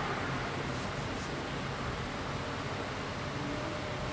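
Steady background hiss of room noise, even and unbroken, with no speech.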